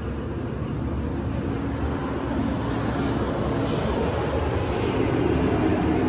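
A steady low engine rumble with a faint hum that grows gradually louder.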